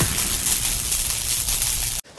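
Noisy sound effect of an animated logo intro: a steady rushing hiss with a low rumble underneath, slowly fading and then cut off suddenly.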